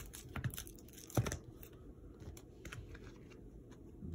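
Rigid plastic trading-card holders being handled: faint rustling and light clicks, with one sharper click about a second in, as one cased card is put down and the next picked up.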